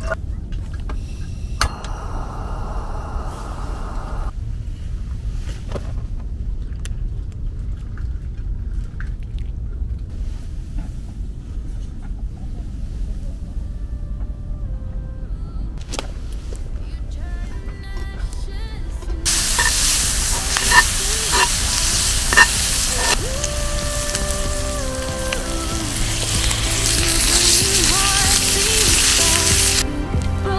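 Water poured from a plastic bottle into a camping kettle briefly near the start. From about two-thirds of the way in, a loud steady sizzle with a few sharp crackles from a skillet of stew cooking over a wood-burning stove.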